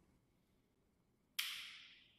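Near silence, then about halfway through a sudden burst of hissing noise that fades away over about half a second: a slide-transition sound effect as the presentation changes slides.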